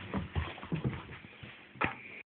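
Staffordshire bull terrier nosing and bumping against the phone held close to its face: a handful of soft, irregular knocks, then one brief sharp sound near the end.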